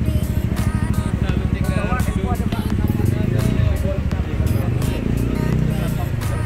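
Busy street traffic: vehicle engines running close by, with music and voices mixed in.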